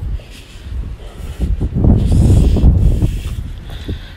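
Wind buffeting the phone's microphone: a low rumble that swells to its loudest about halfway through, then eases off.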